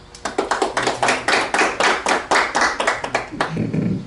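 People clapping by hand: a fast, even run of distinct claps, about five a second, that stops about three and a half seconds in.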